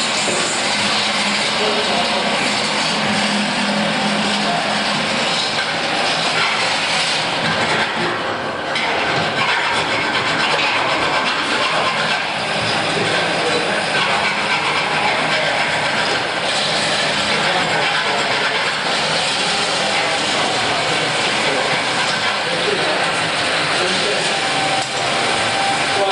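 Handheld electric grinder grinding metal, a loud steady rasping noise that eases off briefly about eight seconds in.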